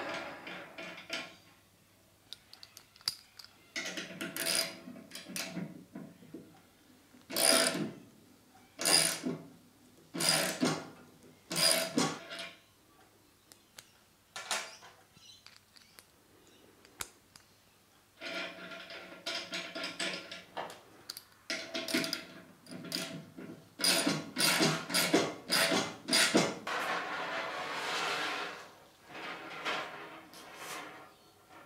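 Ratchet wrench winding down the screw of a brake-line flaring tool to form a two-stage double flare on hard brake line. Short ratcheting strokes come in spells about a second and a half apart, then a quicker run of strokes in the second half.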